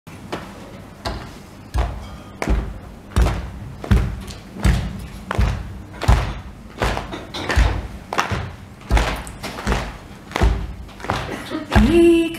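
An audience beating out a steady waulking-song rhythm, one heavy thump about every three-quarters of a second. A woman's singing comes in right at the end.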